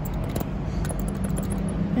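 Outdoor urban background: a steady low hum and rumble with a faint hiss of distant traffic, and a couple of faint clicks about half a second in.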